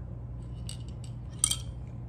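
Glass marble in the neck of a Ramune soda bottle clinking lightly a couple of times as the bottle is tipped to drink and lowered.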